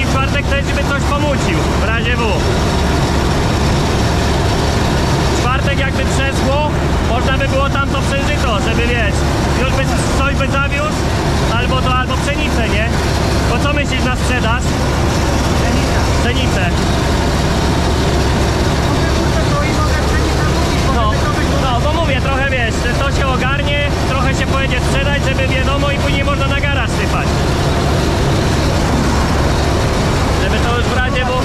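Massey Ferguson 86 combine harvester running steadily while harvesting grain, a constant loud rumble of engine and threshing machinery heard from inside the cab. Men's voices talk over it in several stretches.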